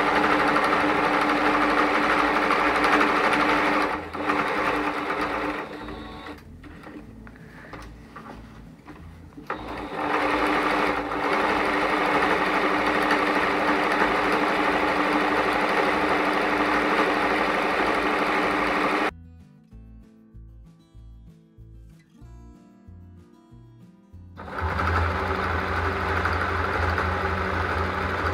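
Singer electric sewing machine stitching a seam through heavy grain-sack fabric, running steadily in long runs. It slows and quietens about four seconds in, runs again from about ten seconds, and stops abruptly for about five seconds before starting up again.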